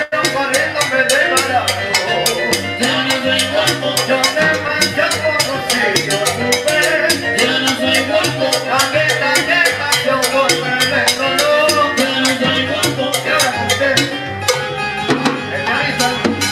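A live salsa band playing, with congas and a steady percussion beat under singing and band instruments.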